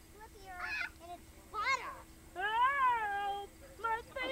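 Young children's high-pitched wordless cries while playing: a short sharp rise-and-fall squeal just before the middle, then a longer, louder call that rises and falls over about a second.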